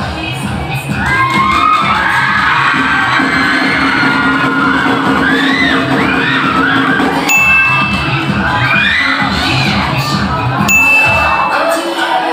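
A large crowd screaming and cheering over loud dance music with a steady beat. Two short, high ringing tones cut in, about 7 and 11 seconds in.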